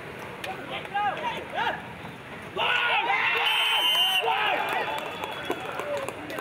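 Field hockey players shouting and calling to one another during practice, the calls short and rising and falling, with a louder stretch of calls about halfway through.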